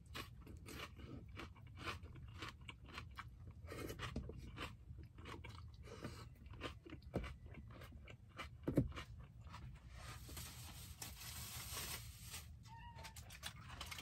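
Close-miked mouth sounds of a person eating with their hands: faint chewing and crunching with many small wet clicks, one louder click about nine seconds in. A soft hiss runs for a couple of seconds near the end.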